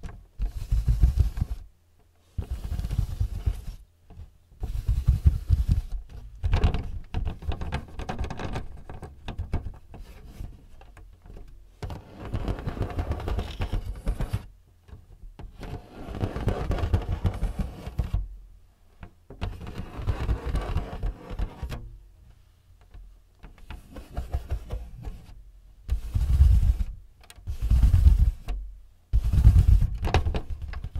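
Fingertips rapidly tapping and scratching on the plastic casing and paper-support flap of a printer-scanner. The sound comes in bursts of one to two seconds, separated by short pauses.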